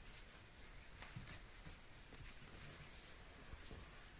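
Near silence: faint, brief scratching and light taps of fingers moving over a carpeted surface, several times.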